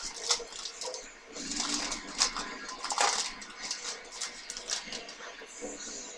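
Crinkling, tearing and rustling of a trading card pack being worked open by hand, in a run of short crisp scrapes and crackles, followed by the cards being slid out and handled.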